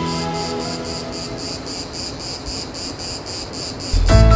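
An insect chirping in quick, regular high-pitched pulses, about five or six a second, over soft music that fades away.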